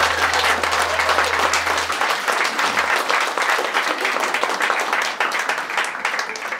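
Audience applauding steadily at the end of a song, a dense patter of many hands clapping.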